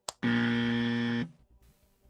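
Game-show style buzzer sound effect: one loud, steady low buzz lasting about a second that cuts off abruptly, with a short click just before it. It marks the answer to a quiz question being scored.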